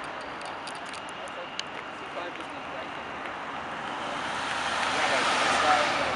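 A CC-115 Buffalo's twin turboprop engines at takeoff power as it lifts off and climbs out, the engine and propeller noise growing steadily louder in the second half as the aircraft approaches.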